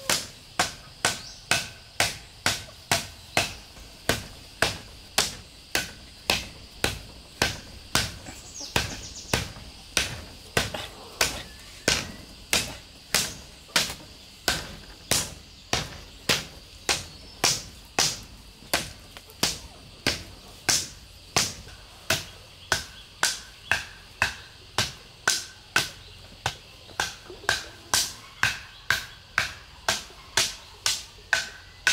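Wooden club pounding the tops of bamboo fence stakes to drive them into the ground: a steady run of sharp knocks, about two a second.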